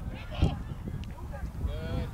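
Field sound from a lacrosse game: a few drawn-out shouts from players on the field, heard at a distance, with a couple of sharp clicks.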